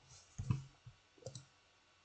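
A few soft, separate clicks and knocks, about three in all, from handling things at a computer desk: mouse clicks and the webcam setup being adjusted.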